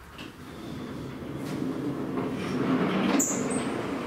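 Vertical sliding chalkboard panels rolling along their tracks as they are pushed up and down. A rumble grows louder for about three seconds and ends with a sharp clack.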